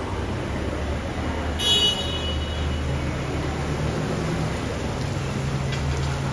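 Cars idling with a steady low engine hum. About two seconds in comes one brief, high-pitched squeal.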